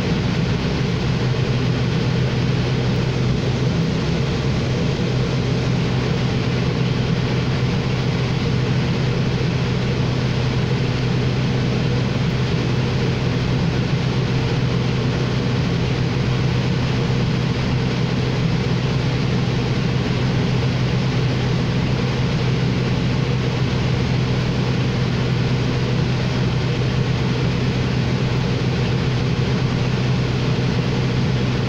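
New Flyer XD40 diesel transit bus idling while stopped, heard from inside the passenger cabin: a steady low engine hum that does not change.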